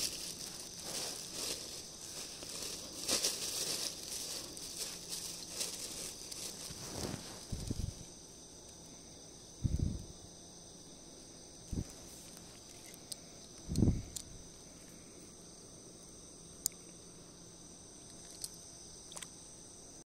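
A steady high-pitched insect chorus, with a plastic bag rustling and crinkling through the first several seconds. Later come a few dull low thumps and a couple of sharp clicks.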